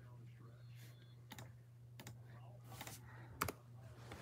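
A few scattered computer keyboard key clicks, the loudest shortly before the end, over a low steady hum.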